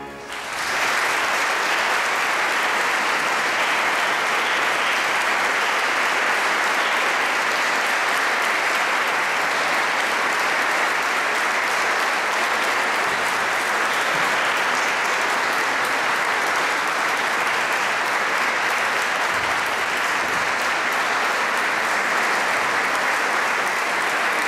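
Audience applauding steadily, the clapping swelling up within the first second.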